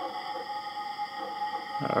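Background music of the NeoCore benchmark app playing through the Motorola Droid 3's speaker: a held synth chord of several steady tones that starts suddenly.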